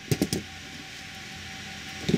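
A few quick clicks and taps in the first half-second as wire strippers are handled and set down on a rubber workbench mat, then a faint steady background hum.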